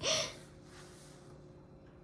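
A girl's short, loud, breathy gasp in the first half-second, with a brief rising voiced edge, followed by faint room tone.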